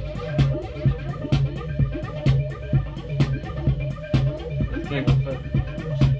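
Live electronic music played on synthesizers and drum-machine hardware: a steady beat of about two hits a second over a repeating low bass note.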